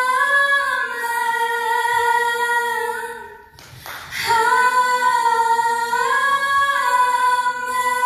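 Two women singing a worship song into microphones, holding long, slowly gliding notes, with a short break for breath about three and a half seconds in.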